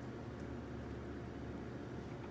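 A steady low hum, with a few faint soft clicks and dabs of a silicone basting brush spreading barbecue sauce over chicken drumsticks.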